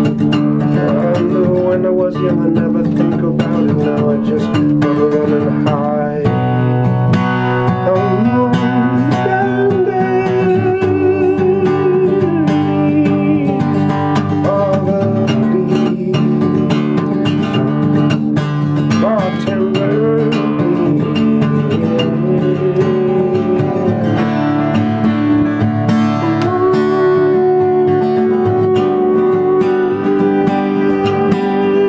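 Acoustic guitar played in a steady rhythmic strum with picked melody notes, an instrumental passage of a solo song.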